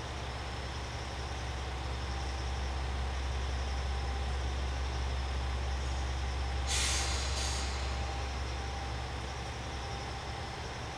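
JR Shikoku 2000 series diesel railcar idling at a standstill, a steady low engine rumble. About seven seconds in, compressed air hisses out in a short double burst from the train's air system.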